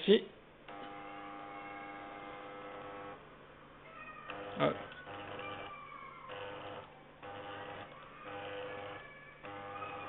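Small electric drive motors of a homemade tracking robot whining in spurts, each spurt starting and stopping abruptly, with pitch shifts as the robot turns to follow its target. A brief louder sound cuts in about four and a half seconds in.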